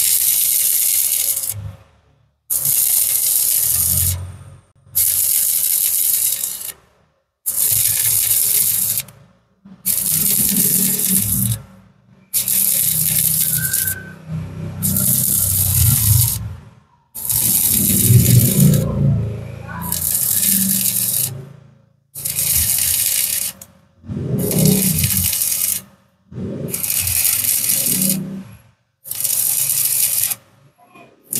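Stick (shielded metal arc) welding arc crackling and sizzling as an electrode runs a bead on steel, in about a dozen bursts of a second and a half to two seconds, each broken off by a short silent gap.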